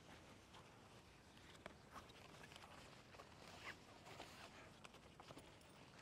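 Near silence, with a few faint scattered clicks and rustles as the shoulder strap is unclipped from a canvas blind bag.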